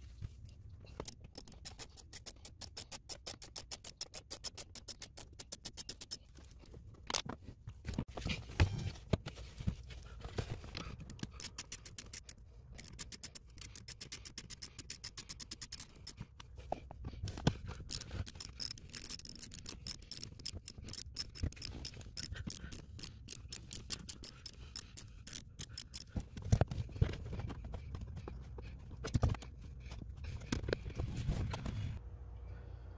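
Small socket ratchet with a T15 Torx bit clicking in rapid runs of several seconds as Torx bolts are backed out, with short pauses and a few knocks of handling between runs.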